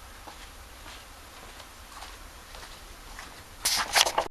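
Quiet room tone with a few faint scattered knocks, then a loud burst of rustling and knocking near the end: handling noise as the recording is stopped.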